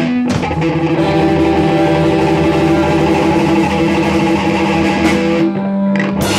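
Live rock band playing: electric guitars, bass guitar and drum kit, with long held guitar notes. Near the end the cymbals stop for a moment while a low note rings on.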